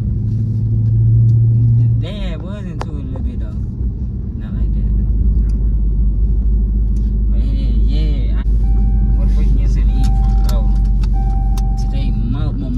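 Car cabin: a low engine and road rumble that starts about four and a half seconds in as the car gets moving. Near the end the car's seatbelt warning chime sounds three long beeps, stopping once the belts are fastened.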